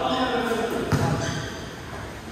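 A basketball bounces on the court floor with a sharp thud about a second in, amid players' shouting voices.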